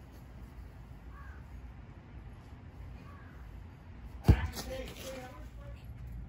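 A soccer ball struck hard once with the foot: a single sharp thud about four seconds in, over a low background hum of wind on the microphone.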